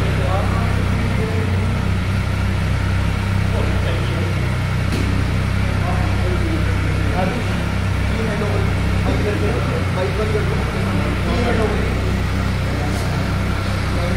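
Triumph Tiger 1200's three-cylinder engine idling steadily at a low, even pitch, with voices of people talking around it.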